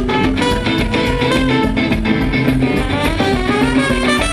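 Live ska band playing: electric guitar and drum kit keeping a steady beat, with a trumpet among the horns.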